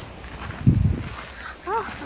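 A boot stepping on iced-over snow, with one crunching footfall about two-thirds of a second in. Near the end comes a short pitched call that rises and falls.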